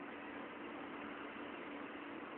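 Room tone through a phone microphone: a steady low hiss with a faint hum, in a pause between speech.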